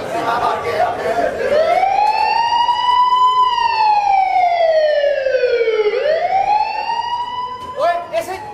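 A siren wail played as a stage sound effect: its pitch climbs for about two seconds, slides slowly down, then climbs again near the end. Voices are heard in the first second or so.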